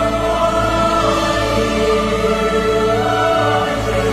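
Devotional song music: held choral chords over a steady low bass note.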